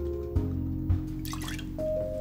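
Lemon juice poured from a bottle into a metal jigger and dripping, then tipped into a steel cocktail shaker, over background music with held notes.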